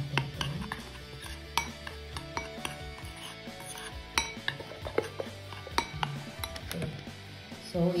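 Metal spoon stirring dry flour breading mix in a bowl, scraping and knocking against the bowl's side in scattered sharp clinks. Soft background music runs underneath.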